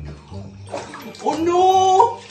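Water running and splashing in a bathtub, with a loud, drawn-out voice in the second second that ends near the end.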